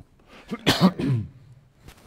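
A person coughing once, a short loud burst about half a second in.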